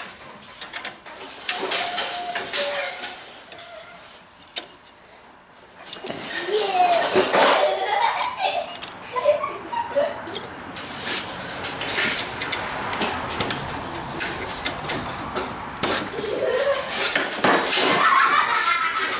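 Irregular metallic clinks and clicks of a wrench turning the bolt that holds the clutch onto a Tecumseh engine's shaft.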